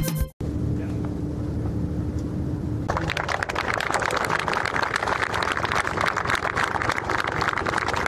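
Crowd of soldiers applauding, the clapping starting about three seconds in after a low steady outdoor rumble with a faint hum. The tail of a music jingle cuts off at the very start.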